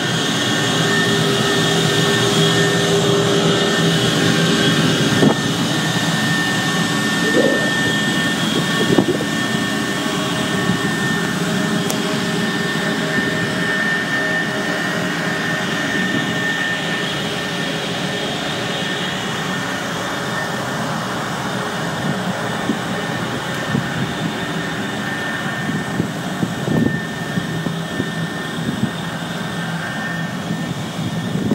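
Biomass gasification plant machinery running: a steady mechanical drone with a high, even whine, and a few light knocks in the first ten seconds.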